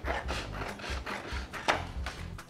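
Scissors cutting through cardstock: a run of rasping snips, with a sharper snap near the end.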